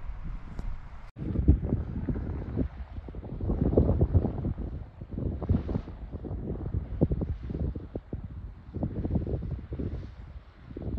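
Wind buffeting a GoPro Hero 9's microphone in uneven gusts, with a sudden brief dropout about a second in.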